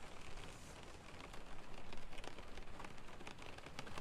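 Rain pattering on a car's roof and windows, heard from inside the cabin as a steady patter of many small ticks.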